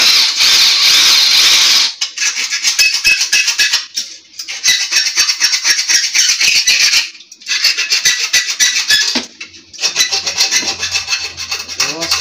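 A file scraping along the edge of a thin cover plate, hand-worked: one loud continuous stretch for about two seconds, then runs of quick rasping strokes broken by three short pauses.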